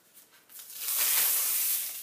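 A sheet of ThermoWeb Sticky Dots adhesive being pulled up, a steady hissing rasp lasting about a second and a half, starting about half a second in.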